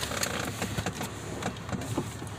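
A vehicle engine idling low and steady, with scattered light clicks and knocks over it.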